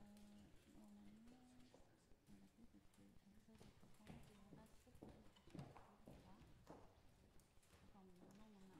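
Very faint room sound of people moving about: low murmured voices, with scattered footsteps and knocks on the floor from about halfway through.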